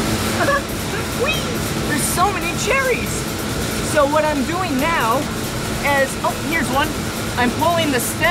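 A man talking over the steady running noise of a cherry-packing line's conveyor machinery, with a constant low hum underneath.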